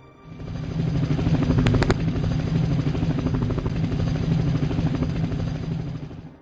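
Helicopter sound effect: a fast, steady rotor chop over a low engine drone. It swells in just after the start, holds steady and fades out at the end.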